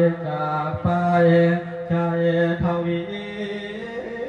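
Man singing a Thai lae, the melismatic sermon-song chant, in long, wavering held notes that shift pitch about every second.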